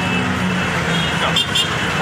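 Ride noise inside a moving rickshaw in city traffic: a steady low hum with road and traffic noise that weakens slightly after about a second.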